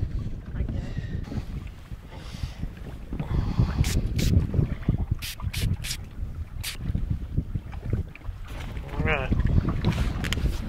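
Wind buffeting the microphone in a steady low rumble, with a handful of sharp clicks between about four and six and a half seconds in and a brief voice near the end.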